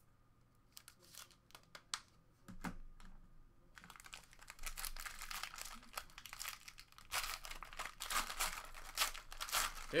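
Foil wrapper of a trading-card pack being torn open and crinkled. A few light clicks come first, then scattered crackles, then steady, dense crackling from about four seconds in.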